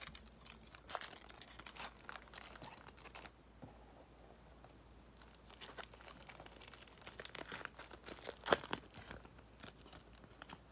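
Foil trading-card pack wrapper crinkling and tearing as it is opened by hand, in irregular crackles with a quieter pause in the middle; the loudest crackle comes near the end.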